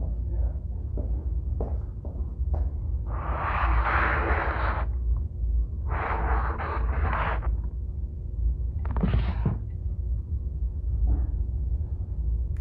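Handling noise as a knitted cardigan on a dress form is grabbed and turned around: three longer rustling swishes a few seconds apart, with a few faint knocks, over a steady low hum.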